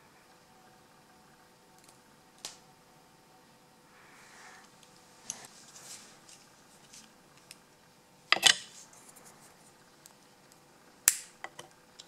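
Tweezers and small metal lock parts (pins, springs and the chrome cylinder) being handled on a tissue-covered desk: scattered light clicks and a brief rustle of paper, with a louder clatter about eight seconds in and a sharp click near the end.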